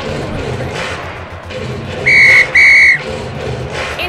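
Two short, loud blasts of a whistle, about half a second apart, over background music with a steady beat.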